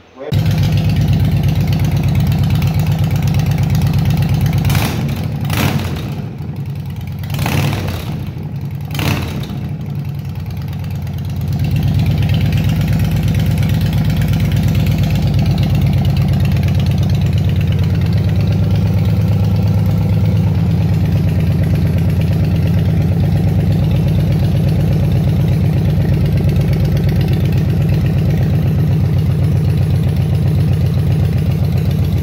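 Yamaha Road Star Warrior's big-bore V-twin, fitted with a 110 cubic inch big bore kit, running on its first start after the rebuild, with a deep sound. It comes in abruptly and runs at a steady idle. Its level dips for a few seconds, with several short sharp sounds, then holds steady.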